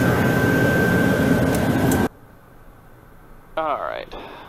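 Pilatus PC-12NG's Pratt & Whitney PT6A turboprop running at idle just after a good start, heard in the cockpit as a steady roar with a high whine. About two seconds in, the sound cuts off suddenly to a much quieter background, and a short sound falling in pitch comes near the end.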